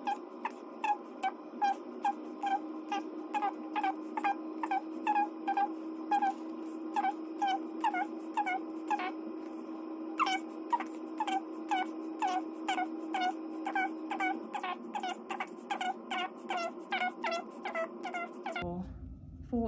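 A sped-up recording of a woman's voice counting aloud, pitched up to a high chipmunk-like chatter of about two to three quick syllables a second, over a steady low hum that stops about three-quarters of the way through.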